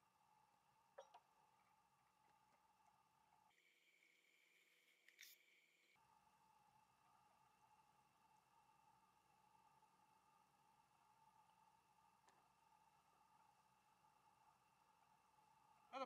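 Near silence: a faint steady hum, with two brief soft clicks, one about a second in and another about five seconds in.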